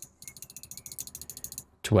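Rapid ticking from a computer mouse, about a dozen ticks a second for over a second, as a line's stroke weight is stepped up.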